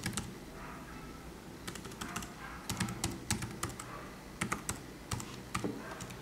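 Typing on the Asus VivoBook X202E's laptop keyboard: an irregular run of light key clicks, about a dozen, in short bursts.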